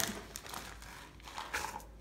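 Plastic bag of rice crinkling as it is handled and tipped to pour rice.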